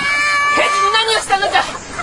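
A high-pitched voice in long held tones that break off about a second in, followed by shorter wavering cries.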